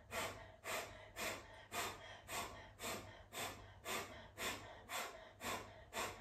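A woman doing breath of fire: short, forceful exhalations through the nose in a steady rhythm, about two a second.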